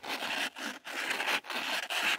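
Fine sandpaper rubbed by hand back and forth along a steel brake caliper guide pin, about two scraping strokes a second, sanding off the rough old grease.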